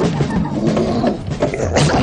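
Cartoon lion character growling and grunting, a voiced animal sound effect from an animated soundtrack.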